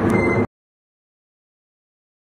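Dead silence after an abrupt cut about half a second in. Before the cut, a short spoken phrase over a steady low outdoor rumble.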